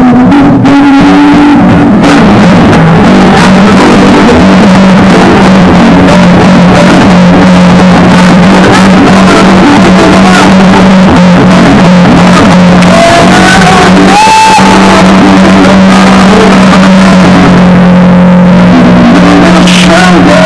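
Live acoustic guitar music played loud on stage, a mostly instrumental blues passage with a long held low note.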